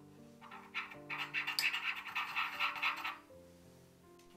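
Metal teaspoon stirring cornstarch and water in a small ceramic bowl: a quick run of scraping and clinking strokes against the bowl from about half a second in, stopping about three seconds in.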